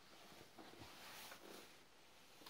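Near silence: faint room noise with a slight swell about halfway through.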